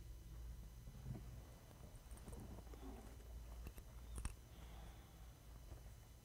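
Near silence: room tone with a low steady hum, faint rustling and a couple of sharp clicks around four seconds in.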